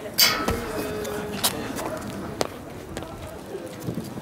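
Shoes landing on stone paving after a vault over a metal railing: a loud scrape about a quarter second in, then a thud, followed by a few single footfalls.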